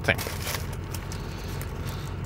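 Paper burger wrapper crinkling faintly as it is folded open, over a steady low hum inside a vehicle cab.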